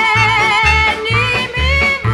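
Instrumental passage of a Sicilian folk song: a held, slightly wavering lead melody over a steady bass that alternates between two notes, about two beats a second.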